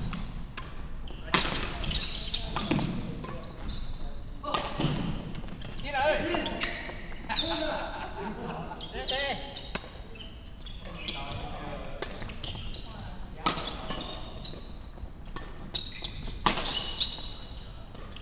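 Badminton doubles rally in a sports hall: repeated sharp racket strikes on the shuttlecock and short high squeaks of court shoes on the wooden floor. Voices come in between, mostly in the middle stretch.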